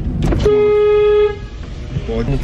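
A single car horn honk, one steady tone lasting just under a second, starting about half a second in.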